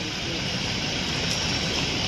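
Steady outdoor background noise: an even rushing hiss over a low rumble, with no distinct events.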